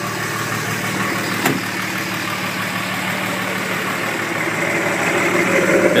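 The 2005 Dodge Ram 3500's 5.9-litre common-rail Cummins inline-six turbo diesel idles steadily and grows a little louder near the end. There is a single sharp click about one and a half seconds in.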